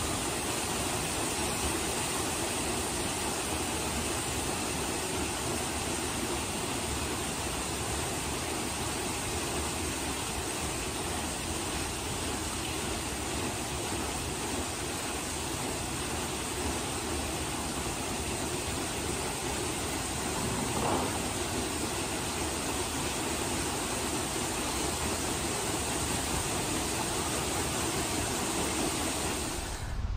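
Large wooden water wheel, nearly 10 m across, turning, with water rushing and splashing through it in a steady wash of sound.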